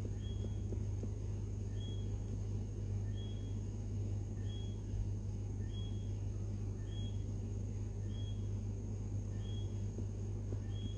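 A steady low hum, with a short high chirp repeating about every second and a quarter.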